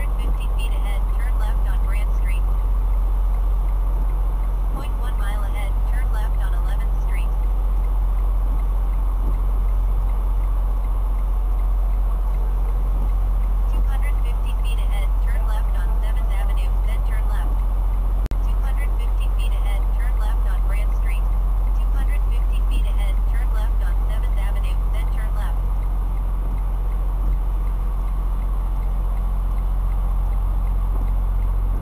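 Detroit DD15 diesel engine of a 2016 Freightliner Cascadia semi truck running at low revs while the truck creeps forward, heard from inside the cab as a steady low drone.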